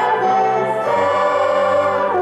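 A group of children singing a song together, holding long notes with a few changes of pitch.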